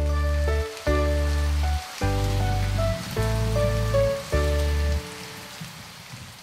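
Rain sound effect, a steady patter, over an instrumental children's tune of keyboard notes and a deep bass. The music drops away about five seconds in, leaving mostly the rain.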